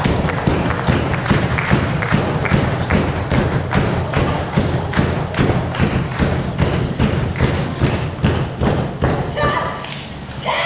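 Rhythmic thudding, about two and a half beats a second, kept up evenly, over a steady low hum.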